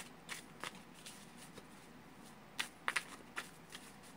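A deck of large tarot cards being shuffled by hand, one packet moved over another. Irregular soft card slaps and snaps, with a quick cluster of sharper ones about two and a half to three and a half seconds in.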